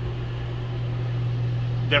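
Steady, unchanging low hum of an air conditioner running, with a constant airy rush over it.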